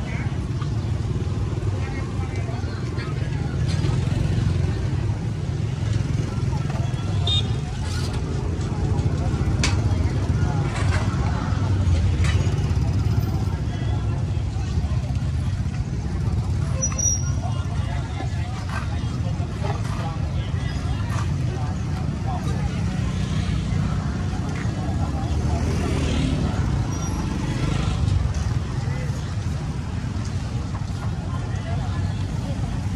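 Busy street ambience: motorbikes and scooters running past under a steady low rumble, with people talking around the stall.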